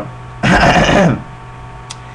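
A man clearing his throat once, a rough rasp of just under a second starting about half a second in, over a steady low hum.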